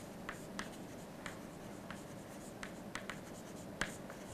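Chalk writing on a chalkboard: faint, irregular taps and short scrapes as the chalk forms letters.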